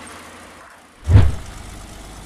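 Vehicle engine rumbling low, with a sudden loud low-pitched burst about a second in, after which a steady low rumble carries on.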